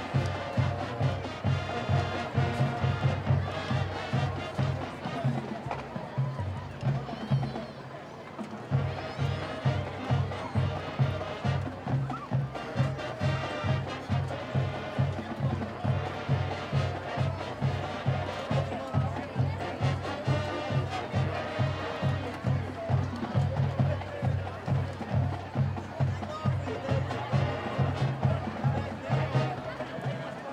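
Recorded dance music with a heavy, steady beat of about two beats a second, played over a stadium's loudspeakers; the beat thins out briefly about seven or eight seconds in.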